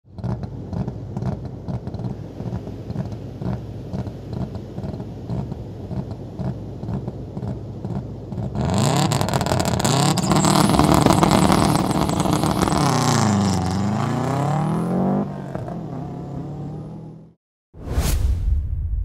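Traxxas Slash 2WD electric RC truck driving, with a clattering first half; from about halfway its motor whine comes in loud and glides down and back up in pitch as it slows and speeds up, then cuts off just before the end.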